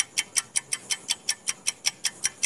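Countdown timer sound effect: a fast, even clock-like ticking, about six ticks a second.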